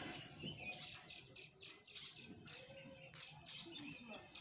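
Faint, scattered bird chirps.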